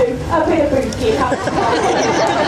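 People talking, several voices chattering together.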